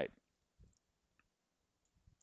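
The last of a spoken word, then near silence broken by a faint low knock and a faint click.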